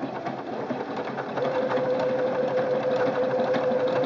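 Singer Quantum Stylist 9960 computerized sewing machine stitching out a lettering stitch. Its sound rises over the first second as it picks up speed, then runs steadily, with a steady whine coming in about a second and a half in.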